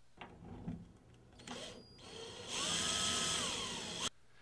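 A few faint handling knocks as the in-ceiling speaker is fitted into its ring, then a cordless drill/driver runs for about a second and a half, driving a screw of the speaker's slot lock mounting. Its whine drops in pitch near the end.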